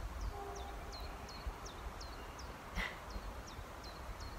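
A bird singing a short high note that drops in pitch, repeated two to three times a second and stopping near the end, over a low wind rumble on the microphone.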